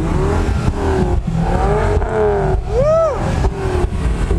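Ford Focus ST's turbocharged five-cylinder engine being revved while parked, its pitch rising and falling several times. The sharpest blip comes about three seconds in, over a steady low rumble.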